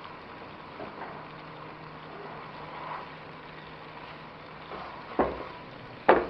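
Salt mackerel and seasonings frying in oil in a wok while being stirred with a spatula: a steady sizzle, with a sharp knock about five seconds in.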